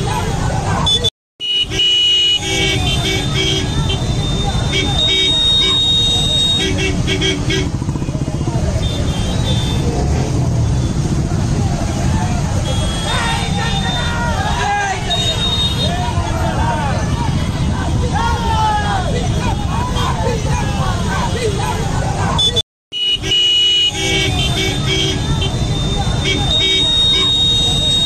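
Rally crowd on motorcycles shouting over running motorbike engines, with vehicle horns honking in long held blasts in two stretches. The sound cuts out briefly about a second in and again about 23 seconds in.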